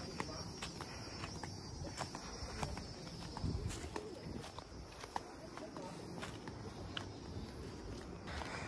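Footsteps on a dirt forest trail, about two steps a second, with a faint steady high-pitched tone in the background.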